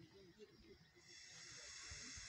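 Near silence: faint outdoor background, with a thin high hiss coming up about a second in.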